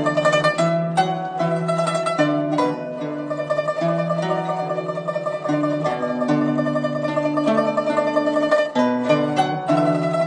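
Guzheng playing: plucked bass notes change underneath while a higher note is rapidly re-plucked in a fast, even tremolo through the middle of the passage, then separate plucked notes return near the end.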